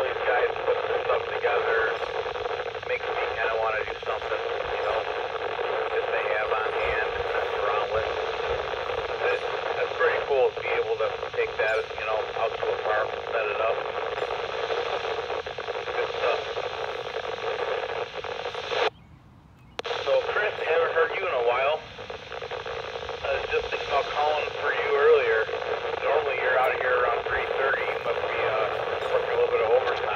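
Another station's voice coming through the speaker of a TYT TH-8600 VHF/UHF mobile radio: narrow, thin FM speech with a hiss of noise under it. The signal cuts out for under a second about two-thirds of the way in.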